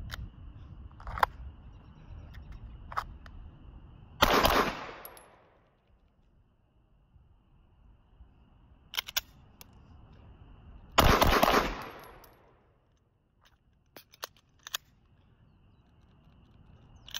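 Smith & Wesson M&P 2.0 pistol fired in two fast strings about seven seconds apart, each a quick cluster of shots with an echo trailing off. Each string stops short when the Apex forward-set trigger goes dead and fails to fire. Lighter clicks and knocks fall between the strings.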